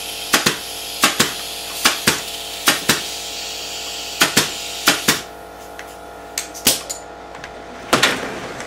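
Pneumatic upholstery staple gun firing staples through fabric into a chair frame: a dozen or so sharp shots, often in quick pairs. A steady hiss runs behind them and drops away about five seconds in.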